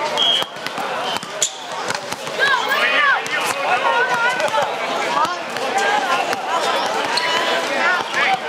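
A volleyball being hit during a rally, a few sharp slaps of hands on the ball, over steady chatter and calls from players and onlookers.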